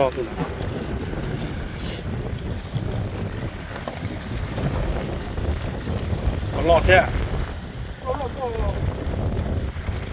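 Wind buffeting the microphone, with small waves washing onto a rocky shore. A man's voice calls out briefly near the start and again twice in the second half.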